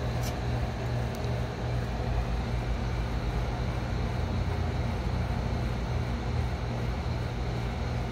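Stout being poured slowly from a can into a tilted glass, over a steady low hum and hiss of machinery in the background. A short click comes just after the start.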